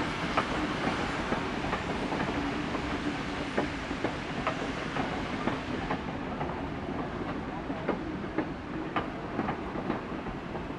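Vintage railway passenger carriages rolling past, their wheels clicking over the rail joints in an uneven clickety-clack over a steady rolling rumble, growing a little quieter after about six seconds in as the last carriage goes by.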